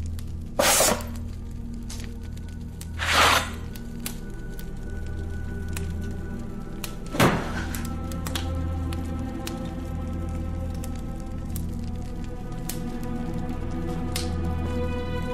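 Film score with a steady low drone and held tones. It is broken three times by sudden loud sounds: a short noisy burst under a second in, another about three seconds in, and a sharp knock about seven seconds in.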